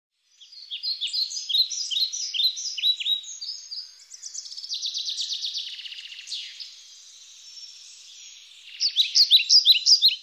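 Birds chirping: rapid series of short, high, downward-sweeping chirps, a buzzier trill in the middle, and another fast run of chirps near the end.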